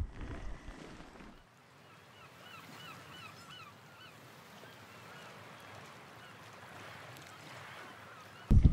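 Faint birds calling over a soft hiss: a quick series of short, repeated calls about three a second, thinning out and fading later. Before that, a low wind rumble cuts off abruptly about a second and a half in.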